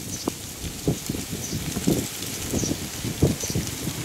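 Irregular low rustling and bumping on the microphone, like wind buffeting or handling, with a few faint, short high calls from thrushes.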